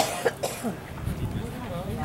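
A person coughing, two quick coughs at the start, over faint background chatter.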